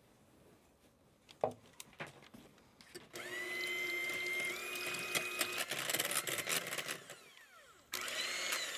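Electric hand mixer whipping cream in a glass bowl. After a few clicks and knocks, the motor starts about three seconds in with a steady high whine. The whine steps up in pitch twice as the speed rises, then winds down near the end.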